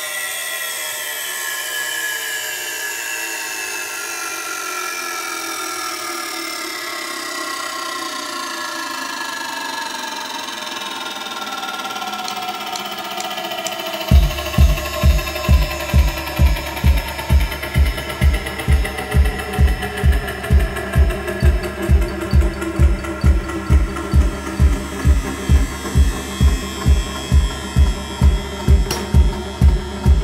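Live band playing electronic music: many layered synthesizer tones glide slowly downward together, then about halfway through a steady kick drum comes in at about two beats a second.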